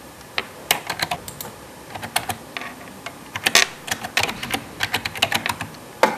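Typing on a computer keyboard: irregular runs of key clicks, with a short pause a little before halfway through.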